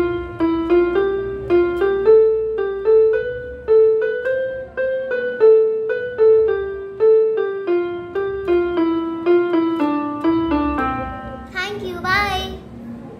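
Electronic keyboard in a piano voice, played one note at a time: a simple melody at an even pace of about two notes a second, stepping up and then back down. A short voice comes in just before the end.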